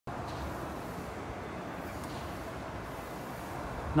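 Steady outdoor background noise: an even hiss with some low rumble and no distinct events.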